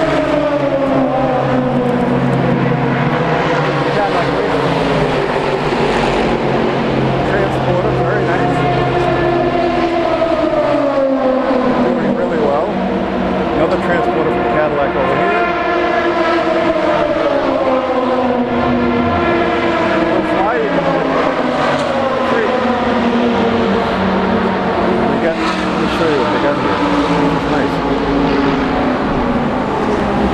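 Race car engines running on the circuit during practice, several overlapping engine notes rising and falling in pitch every few seconds as the cars accelerate and pass.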